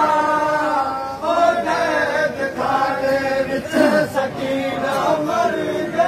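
Men chanting a noha, a Shia mourning lament, in chorus, in phrases of about a second with long held notes.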